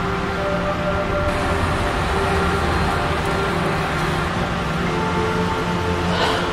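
Slow background music with held notes, over a steady hiss of noise.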